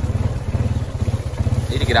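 Four-wheeler (ATV) engine running steadily under way, a low pulsing rumble.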